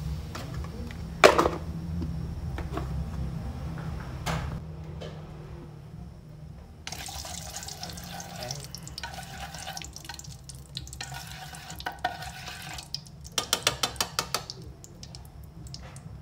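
A metal utensil stirring and scraping through hot oil in a metal pan, with a sharp knock about a second in. Rough scraping stretches follow in the middle, and a quick run of clinks against the pan comes near the end.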